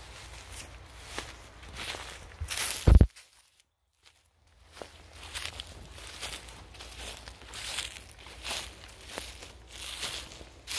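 Footsteps through grass and leaf litter, about two steps a second. A loud thump comes just before three seconds in, followed by a second or so of near silence before the steps start again.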